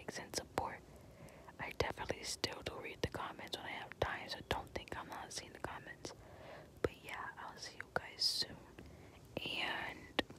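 Close-miked whispered talk with many short clicks scattered through it.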